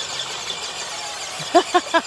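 Electric motors and drivetrains of two tethered RC monster trucks whining with a faint, wavering high pitch as they pull against each other. A man laughs in short bursts about one and a half seconds in.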